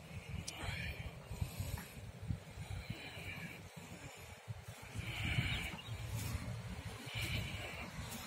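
Uneven low wind rumble on the microphone with soft rustling hisses every second or so, like footsteps through dry, harvested rice straw.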